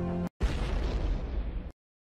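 Explosion-like reveal sound effect: a sudden noisy blast a little under half a second in, fading over about a second before cutting off abruptly. It is the stinger that marks the next finalist being added to the results board.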